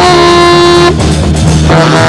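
Saxophone solo over a rock band's accompaniment: one held note of about a second, then a run of quicker notes.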